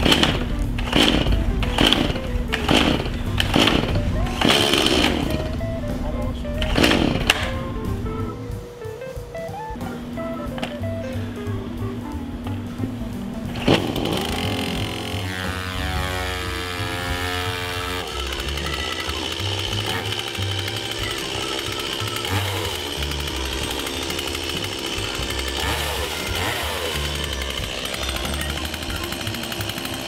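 Two-stroke chainsaw being pull-started after sitting unused for about a year: several pulls on the starter cord about a second apart, then the engine catches about fourteen seconds in and keeps running.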